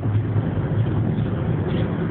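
Steady road and engine noise inside a car's cabin at freeway speed: a low, even drone.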